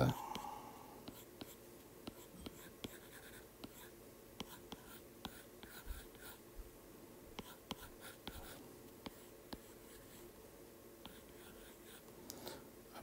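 Stylus tapping and stroking on a tablet's glass screen while sketching: faint, irregular ticks with short scratchy strokes between them.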